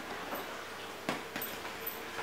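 A few sharp clicks and knocks of a bearded collie's claws and his ball on a hard tiled floor as he scrambles after the ball, the loudest about a second in, over a faint steady hum.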